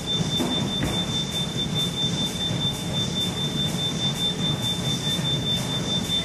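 Steady low background rumble with a constant high-pitched whine running through it.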